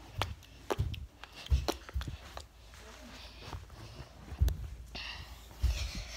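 Footsteps of a person walking: irregular dull thumps, some with sharp clicks, mixed with knocks from a handheld phone being jostled.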